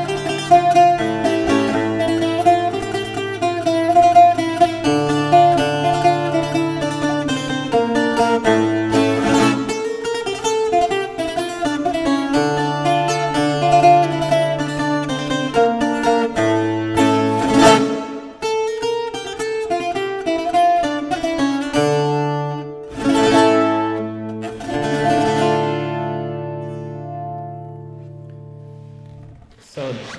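Viola da terra, the Azorean twelve-string viola, played solo: a quick picked melody over held bass notes, breaking into a few strummed chords near the end. The last chord is left to ring and slowly dies away.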